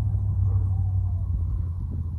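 Steady low rumble, easing slightly over the two seconds.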